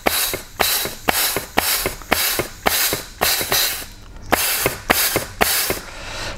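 Compressed air blown in short blasts into an oil passage of a 09G automatic transmission, about two a second, each blast with a click as the clutch piston applies and releases. This is an air check showing that the clutch pack engages.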